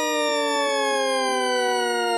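A single sustained siren-like tone with many overtones, sliding slowly and steadily downward in pitch, opening a new track after a brief gap between songs.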